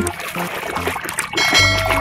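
Water splashing and sloshing in a basin as a muddy toy bus is scrubbed by hand, under background music with steady bass notes.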